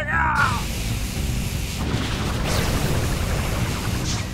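Cartoon action soundtrack: a brief shouted cry right at the start, then dramatic background music under a rushing sound effect about two and a half seconds in.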